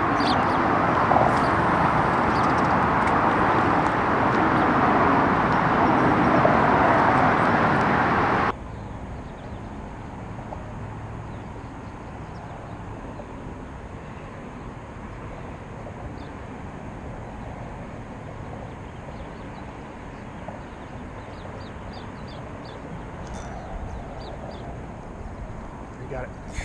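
Steady traffic noise from the freeway overhead, an even wash with no distinct engines. About eight seconds in it drops off suddenly to a much quieter steady hiss with a few faint high ticks near the end.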